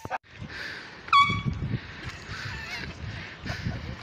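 A single short, high-pitched car horn chirp about a second in, dipping slightly in pitch and then holding. Steady outdoor noise with a low rumble follows.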